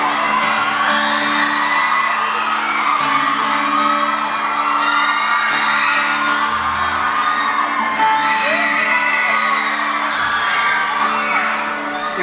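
Live pop-rock band playing held guitar chords, drowned by a crowd of fans screaming and whooping.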